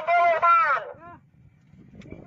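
A raised, high-pitched voice calling out for about a second, then faint low background noise.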